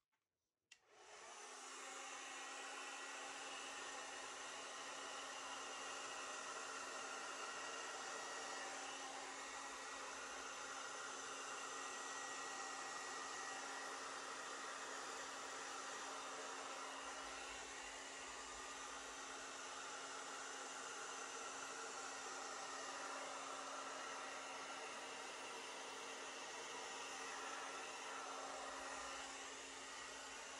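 Handheld hair dryer switched on about a second in and running steadily on high fan with cool air: a steady rush of air over a constant low motor hum.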